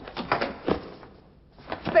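Handling noise of a heavy box being passed over and lifted: a few quick knocks and thuds in the first second, then a voice near the end.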